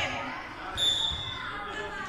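A handball bouncing and striking the floor of an indoor sports hall during children's play, with a short high-pitched tone about a second in.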